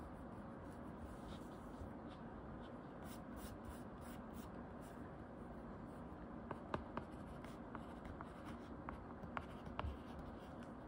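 Faint tapping and scratching of an Apple Pencil dupe stylus's plastic tip writing on a tablet's glass screen, with a run of small sharp taps in the second half.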